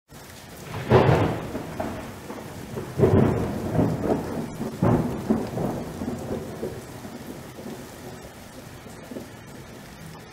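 Thunder rolling over steady rain: three heavy rumbles, the first about a second in and the next two about two seconds apart, each fading slowly back into the rain.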